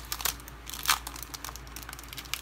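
Clear plastic cellophane bag crinkling as it is handled and opened by hand, with irregular crackles, the sharpest about a second in.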